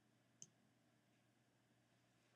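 Near silence, with a single faint click about half a second in.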